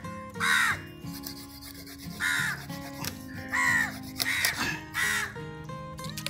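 A crow cawing, five harsh calls spaced about a second apart, over background music.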